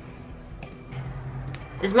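Scissors snipping through a false nail tip: two sharp clicks, one about half a second in and one near the end.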